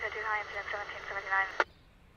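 A tinny, narrow-band voice over a radio speaker, like a police radio transmission, cutting off with a click about one and a half seconds in.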